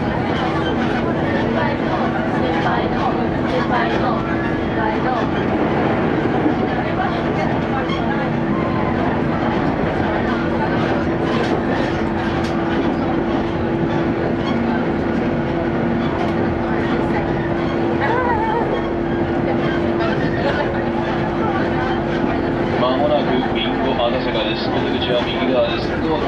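Interior running noise of a JR West Series 115 electric train at speed: wheels rumbling on the rails under a steady hum.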